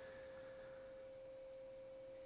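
Near silence: room tone with a faint, steady, single-pitched whine that runs unchanged through the pause. A fainter, higher tone fades out about halfway through.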